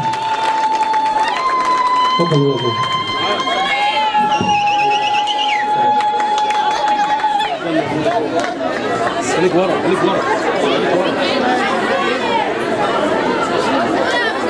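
Women ululating (zaghareet) in long, high, trilling calls that shift pitch a few times. About eight seconds in, a crowd of many voices takes over, chattering and cheering together.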